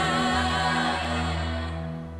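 Recorded avant-rock band music: a sustained chord is held over a steady low bass note, with no drum hits, and its upper parts fade away toward the end.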